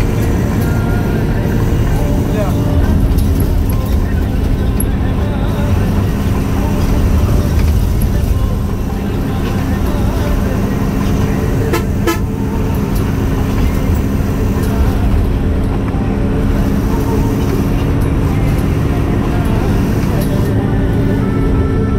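Steady engine and road noise from inside a vehicle cab driving at speed on a highway, with horn toots.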